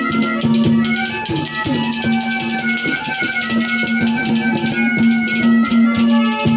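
Haryanvi ragni folk accompaniment without singing: barrel hand drums beaten in a steady rhythm under a melody instrument that holds a long, steady note.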